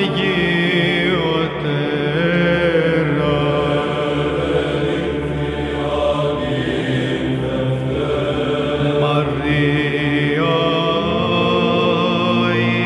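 Byzantine-style Greek Orthodox chant: a slow sung line that glides between notes over a steady held low drone.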